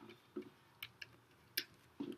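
A stylus tip tapping and ticking on a tablet surface while handwriting: a handful of faint, irregular clicks.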